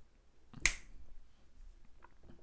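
A single short, sharp click about two-thirds of a second in, followed by a few faint small clicks in a small room.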